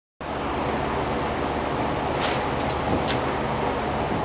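Steady background hiss with a faint low hum, broken by two faint clicks in the second half.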